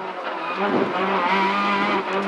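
Peugeot 206 RC Group N rally car's 2.0-litre four-cylinder engine running hard under load, heard from inside the cabin at a fairly steady pitch, growing a little louder.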